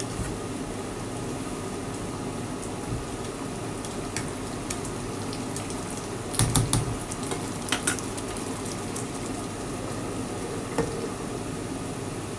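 A pan of squash in coconut milk simmering with a steady bubbling hiss, while a plastic slotted spatula stirs it and clicks against the pan. The clicks come loudest in a cluster a little past the middle, with one more sharp tap near the end.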